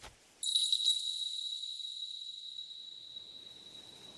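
A high, bell-like chime struck once about half a second in, its clear single-pitched ring fading slowly over about four seconds.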